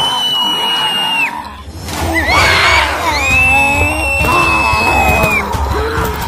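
Two long, high-pitched screams over background music: the first breaks off about a second in, the second starts about three seconds in and holds until about five and a half seconds.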